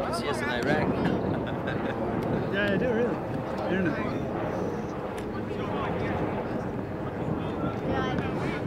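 Indistinct chatter of several people talking and calling out at once, with no single clear voice, and a few sharp clicks in the first second.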